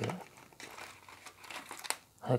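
Plastic protective film on a wireless earbud charging case crinkling as the case is handled and pulled from its cardboard tray, in irregular crackles with a sharper crack just before the end.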